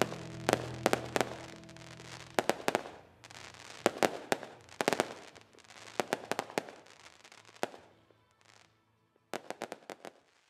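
Aerial fireworks going off: a fast, irregular run of sharp bangs and crackles, over music that fades away during the first part. The bursts die down about eight seconds in, then a last cluster of bangs comes near the end.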